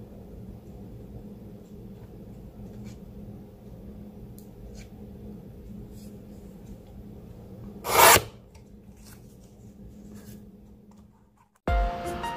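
Fiskars paper trimmer's blade drawn once through cardstock: a short, loud rasp about eight seconds in. Around it there are faint small clicks of paper handling over a steady low hum.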